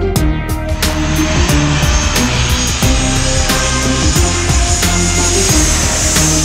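Background music with a steady beat, joined about a second in by a jet airliner's rushing engine noise with a high whine, which swells toward the end.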